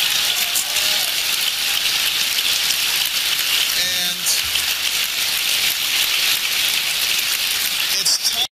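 A large audience applauding: dense, steady clapping that holds at one level throughout, with a voice briefly heard through it about four seconds in.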